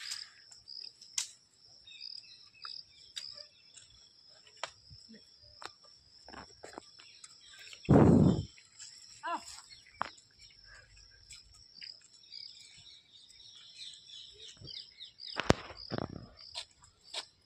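Insects chirping steadily in a high, even chorus, with scattered bird chirps and small clicks. About eight seconds in, one brief loud low burst stands out above everything else.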